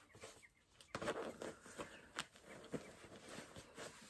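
Faint rustling of a cotton cushion cover being handled and pinned along its seam, with small scattered clicks from pins and clips. It grows busier about a second in, and a sharper click comes a little after two seconds.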